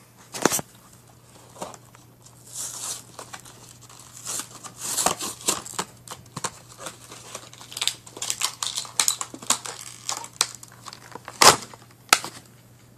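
Plastic packaging being crinkled and torn open to get at the Beyblade's parts: irregular rustling and crackling, with a sharp click about half a second in and another near the end.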